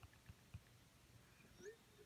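Near silence: room tone with a few faint clicks from fingertip taps on an iPhone touchscreen keyboard. About a second and a half in there is one brief faint squeak.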